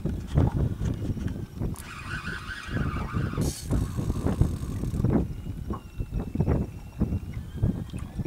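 Wind buffeting the microphone in strong, irregular gusts, with scattered knocks from the boat; a short hiss comes about three and a half seconds in.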